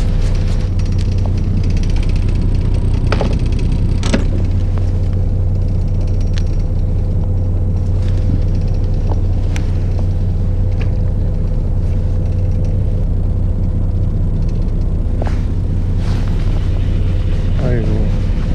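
Fishing boat's engine running at a steady low drone, with a few light clicks from the angler's handling of the tackle.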